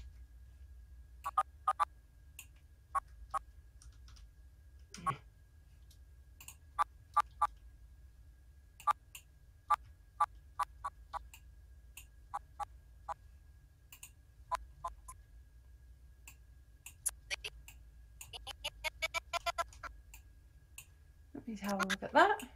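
Computer keyboard keys clicking, single and paired taps spread out, then a fast run of rapid taps near the end: stepping an animation back and forth frame by frame with the G and F keys in Cinema 4D.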